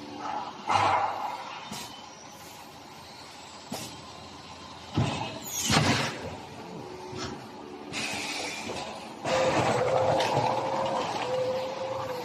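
Thermoforming vacuum skin packaging machine running: scattered mechanical clicks and knocks, a loud hiss falling in pitch about six seconds in, and from about nine seconds a steady, louder hum with rushing noise.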